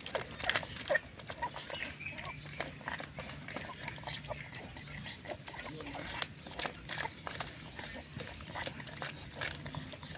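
Two kittens eating rice from plastic bowls: quick, irregular wet chewing and smacking clicks.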